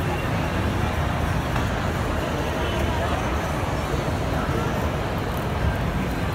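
Shopping-mall ambience: indistinct crowd chatter over a steady low rumble, with no single sound standing out.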